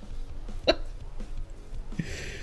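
A man laughing, mostly held in, with one short sharp burst of laughter about a third of the way in.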